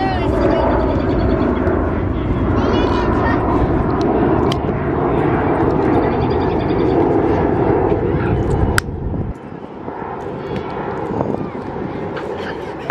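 Children shrieking and shouting in play, heard over a steady low roar that drops away sharply about nine seconds in.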